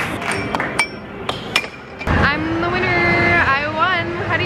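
Amusement arcade din: several sharp knocks and clinks in the first half, then a long wavering pitched sound from a voice or a game machine, held for about a second and a half.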